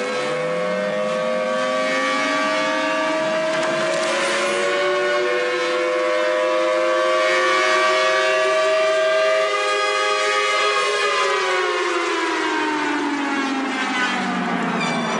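Beatless electronic music in a drum and bass mix: sustained synth tones with a slow siren-like glide that rises over the first half and falls back near the end, with no drums and no deep bass.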